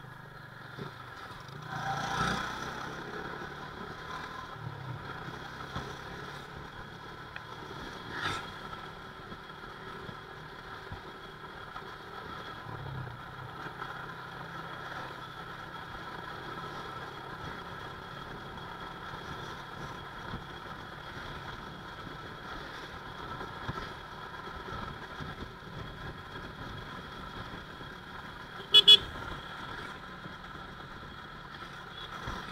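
Motorcycle riding steadily through town traffic: a constant engine hum with road noise. Near the end a horn gives two short, loud toots, the loudest sound.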